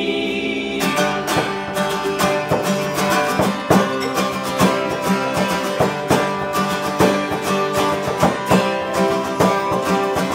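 A held vocal harmony chord dies away about a second in, and an instrumental break follows: acoustic guitar strumming over a frame drum beating a steady, even rhythm.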